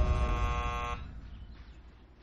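Electric intercom door buzzer sounding once, a steady buzz about a second long that cuts off sharply: someone is calling at the door.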